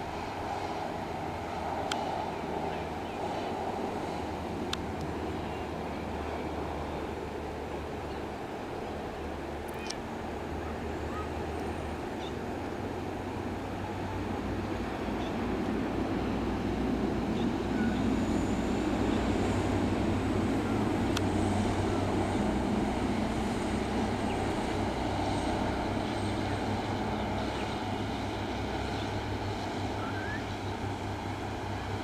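Engine of a bus on the road: a steady low drone that swells from about halfway through and eases off toward the end.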